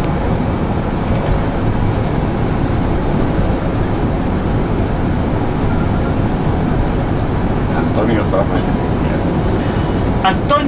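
Steady low drone of a moving coach bus, engine and road noise heard from inside the passenger cabin.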